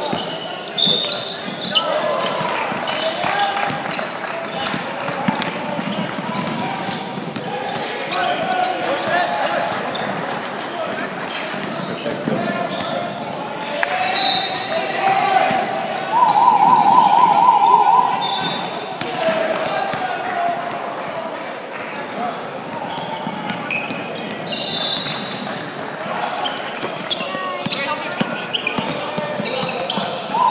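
A basketball game on a hardwood court in a large, echoing hall: the ball bouncing, sneakers squeaking and players calling out. A little past halfway comes a loud warbling signal tone lasting about two seconds.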